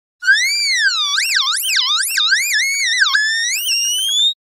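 A loud, high-pitched siren-like wail that swoops up and down in pitch several times, then jumps and climbs steadily higher to the end.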